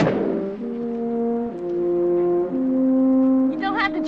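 Orchestral film score with brass, French horns among them, opening on a sudden loud chord and then playing slow held notes that step downward about once a second.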